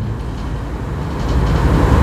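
A low rumble that grows louder through the second half.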